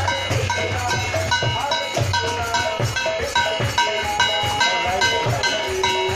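A metal plate gong struck with a stick in a fast, even rhythm, each stroke leaving a clanging metallic ring, over the steady thumps of a drum in devotional kirtan music.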